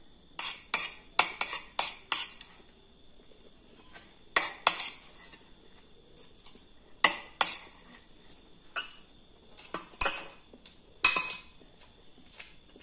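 Metal spoon clinking and scraping against ceramic bowls while eating, in short sharp strikes: a quick run of several in the first two seconds, then single ones spread through the rest. A steady high insect trill runs underneath.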